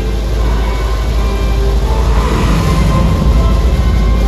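Recreated Saturn V rocket launch played loud through a theatre sound system: a deep, steady rocket rumble under dramatic music, swelling slightly about two seconds in.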